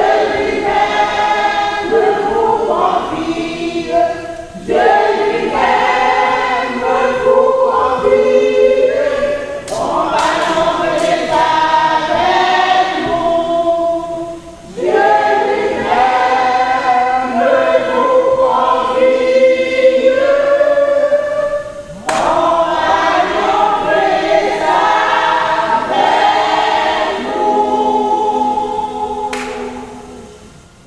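A women's choir singing a hymn together in long phrases, with short breaks between them; the singing stops at the very end.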